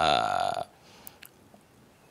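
A man's drawn-out hesitation sound, "euh", lasting about half a second, then a pause with only faint room tone.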